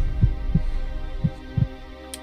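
Heartbeat sound effect: two slow double thumps about a second apart over a steady droning tone.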